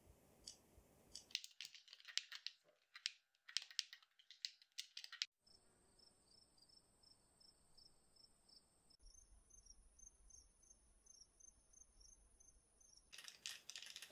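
Faint rapid clicking of game-controller buttons, then a faint chorus of crickets: a steady high trill with a regular pulse about three to four times a second, stepping slightly higher in pitch about nine seconds in. The controller clicking returns near the end.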